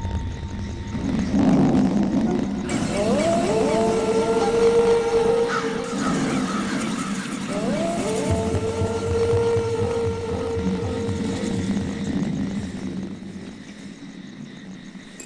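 Background music score of a TV drama: two phrases, each opening with upward slides into a long held note, over a low drone.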